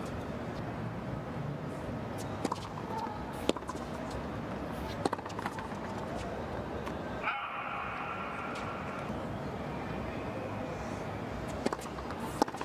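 Tennis rally: racket strikes on the ball, several sharp hits a second or so apart, the loudest about three and a half seconds in, over steady stadium background noise.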